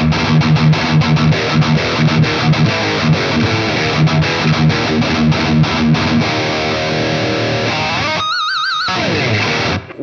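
Solar X1.6 Ola electric guitar played through a high-gain distorted tone: fast palm-muted riffing with rhythmic low chugs for about six seconds. Then come held notes and, near the end, one high note with wide vibrato.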